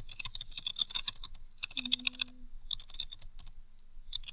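Typing on a computer keyboard: a quick, irregular run of key clicks with a brief lull just after the middle.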